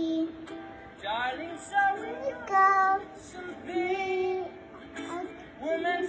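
A young girl singing into a microphone in short phrases with brief pauses between them.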